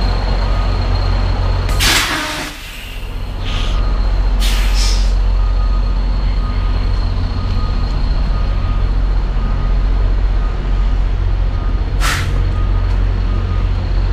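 Semi tractor's diesel engine idling steadily, with several short hisses of air from its air brakes: the loudest about two seconds in, more around four to five seconds, and another near twelve seconds.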